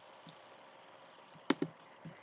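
Two sharp clicks in quick succession about one and a half seconds in, over a faint steady hiss: a mouse or slide clicker advancing the presentation slide.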